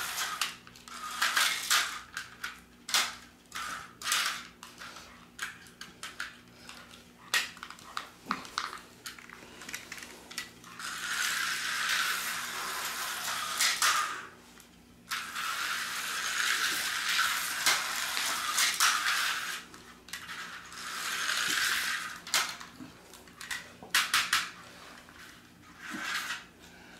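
HO-scale slot car running on the plastic track in three spurts of a few seconds each, its small motor and pickups buzzing, between clicks and clacks of the cars being handled and set in the slot.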